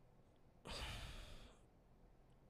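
A man's audible breath into a close microphone: one breath lasting about a second, starting just over half a second in.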